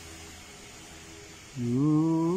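A faint steady background hum, then about one and a half seconds in a man's drawn-out, steady-pitched "mmm" as he considers the coffee he is tasting.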